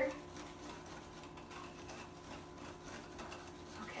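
Wire whisk beating a thick sugar, oil and vanilla batter base in a mixing bowl: a fast, steady run of soft scraping ticks against the bowl.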